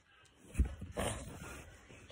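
A board book being handled close to the microphone while its page is turned: a low thump about half a second in, then a short papery rustle that fades.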